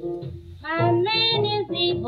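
A 1944 Decca 78 rpm blues record playing: a woman's singing voice comes in about half a second in, over piano, string bass, guitar and drums.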